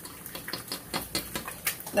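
Saucepan of instant ramen noodles at a hard boil: a stream of small, irregular pops and clicks over a soft hiss.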